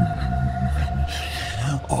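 A deep, pitch-lowered creature voice making low wordless sounds, over a steady droning tone from the background score that stops just before the end.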